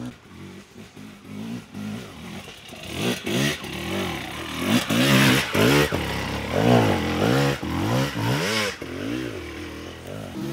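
Enduro dirt bike engine revving up and down again and again in short throttle bursts as it climbs a rocky trail. It gets louder from about three seconds in, is loudest in the second half, and eases off near the end.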